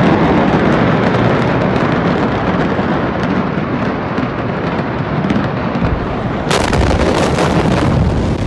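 A large fire burning with a steady rush and many small sharp pops. About six and a half seconds in, the huge Beirut port explosion of stored ammonium nitrate hits: a sudden, very loud blast and rumble that swamps the recording and goes on to the end.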